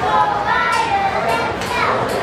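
Crowd of children's voices chattering and calling out, high-pitched and overlapping, with no single clear voice.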